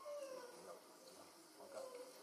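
Faint, scattered voices of people greeting one another as they exchange the sign of peace, with short rising and falling voice tones.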